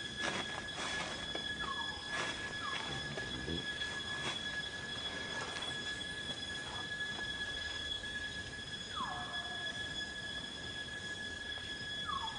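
Steady, high-pitched two-tone drone of forest insects, with a few short falling calls over it: two in the first three seconds and a longer one about nine seconds in.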